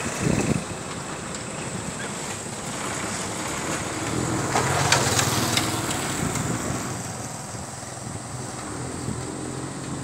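A small motor vehicle engine runs on a road over steady road and wind noise. There is a thump just after the start and a few sharp clicks about five seconds in.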